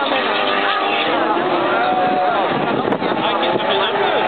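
Autocross cars racing on a dirt circuit, their engines heard at a distance, mixed with people talking close to the microphone.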